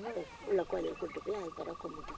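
Quiet conversational speech, with a steady high-pitched pulsing buzz that comes in shortly after the start and holds on.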